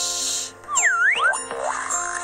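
Playful background music with a cartoon boing sound effect about midway, its pitch sweeping down and back up, after a short hissing swish at the start.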